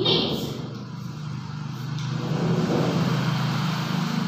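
A motor vehicle engine running, a steady low hum that grows louder in the second half.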